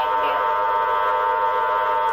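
Spiricom device's steady drone of many fixed tones sounding together, with no voice riding on it.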